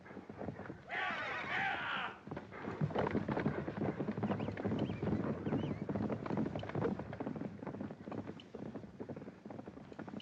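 Several horses galloping over dry ground, a fast drumming of hooves that starts about three seconds in and thins out toward the end. About a second in there is a short, high, wavering call lasting about a second.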